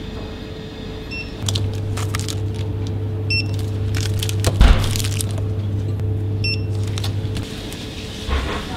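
Two short, high electronic beeps about three seconds apart from a self-service kiosk's barcode scanner as snack bars are scanned. There are light clicks, a thump near the middle and a steady low hum.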